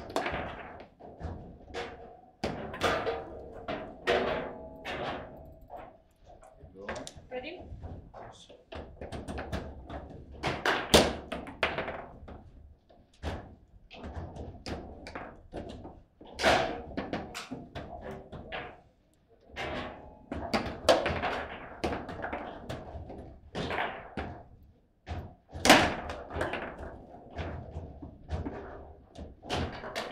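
Table football being played: the hard ball is knocked about by the plastic player figures and the steel rods clack and thunk against the table at an irregular pace, with a few harder shots standing out, the loudest about eleven seconds in and near twenty-six seconds.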